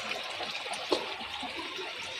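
Water pouring from pipes and splashing steadily onto the surface of a koi pond and into a plastic tub.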